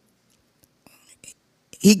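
A pause between spoken phrases: near silence with a few faint soft sounds about a second in, then a woman's voice starts again near the end.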